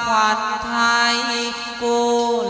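Chầu văn (hát văn) ritual singing: a singer draws out a long, held note with slow bends in pitch, over the band's accompaniment.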